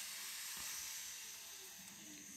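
Faint steady hiss of background recording noise in a pause without speech, slowly getting fainter.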